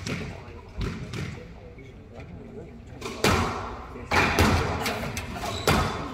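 Squash rally: a hard rubber squash ball struck by rackets and smacking against the court walls. It gives sharp, echoing hits about a second apart, and the loudest come in the second half.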